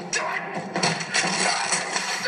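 Film soundtrack of a frantic painting scene: a dense, continuous clatter of scrapes and knocks as paint is slapped and smeared across a large canvas.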